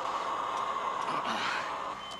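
A steady hum from the film's soundtrack, with faint indistinct sounds.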